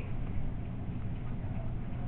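Steady low hum and hiss of background room noise, with no distinct events.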